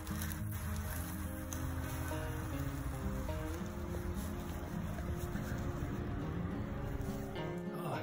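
Background music: held notes that change pitch every second or so.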